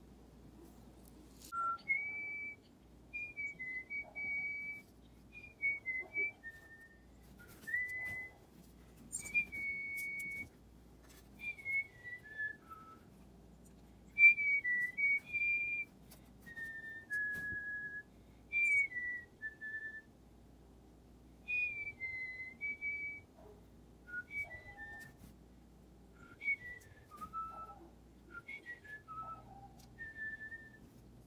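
A person whistling a slow tune: clear held notes that step down and slide between pitches, in short phrases with brief pauses between them.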